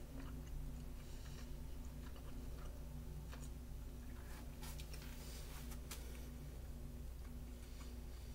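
A person chewing a mouthful of a soft macaroni-and-ground-beef skillet meal, with a few soft clicks, most of them between about three and six seconds in, over a steady low hum.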